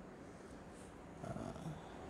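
Quiet pause between spoken phrases: faint room tone, with a faint short sound a little past the middle.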